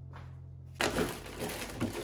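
Background music cuts off less than a second in, giving way to dense crinkling, rustling and clicking as frozen food packages are handled in a refrigerator's freezer drawer.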